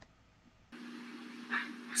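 Near silence, then about two-thirds of a second in a steady low electrical hum and faint room noise start, with a short faint breath-like sound a second later, just before a woman's voice begins.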